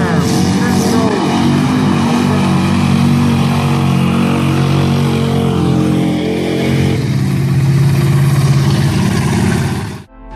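Mud-bog pickup truck engine running hard under load, churning through a mud pit, with a steady engine note that changes about seven seconds in. Crowd voices are mixed in.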